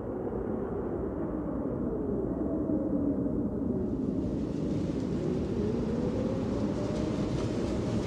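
Low rumbling drone that swells in and holds steady, with tones that slowly waver up and down in pitch. It grows brighter and hissier about halfway through, as the opening of a runway-show soundtrack.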